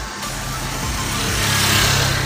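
A motorcycle passing close, its engine running steadily and getting louder toward the end as it goes by.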